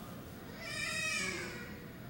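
One drawn-out, high-pitched vocal sound about a second long, rising then falling in pitch. It is quieter than the miked speech around it, like a reaction from a listener in the room.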